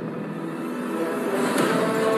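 A rushing, rumbling sound effect from a cartoon soundtrack, with sustained music notes swelling in about a second in.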